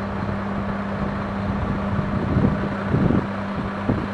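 Diesel water-tanker truck engine running with a steady low hum, with gusts of wind buffeting the microphone over it.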